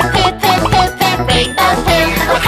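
Upbeat children's song with a bright, jingly backing and a high voice singing a quick repeated chorus, "poo-poop, poo-poop."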